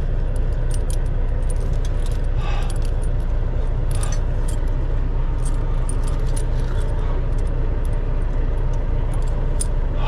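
Steel tire chains clinking and jangling as they are handled and fitted around a truck tire, with irregular metallic clicks over a steady low rumble.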